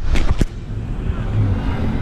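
Traffic noise from a busy city road: a low, steady rumble of passing cars, with two brief knocks near the start.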